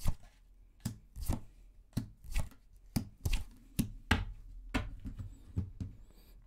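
Tarot cards being dealt one by one onto a wooden table: a run of about a dozen sharp taps, roughly two a second.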